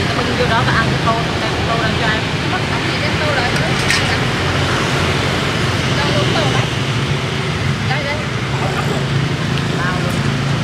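Steady street traffic, a constant hum of passing motorbike and car engines, with indistinct voices of people talking nearby. A brief sharp click about four seconds in.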